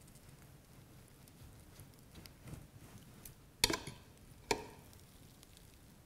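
Quiet scalpel work on a lamb kidney in an enamel dissecting tray: faint nicking and handling of the fat, with two sharp clicks about a second apart past the middle, the first ringing briefly.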